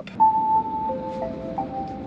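Fiat 500e's electronic start-up chime: a short tune of a few clear notes, beginning on a high note just after the start and stepping down to lower notes that overlap and ring on.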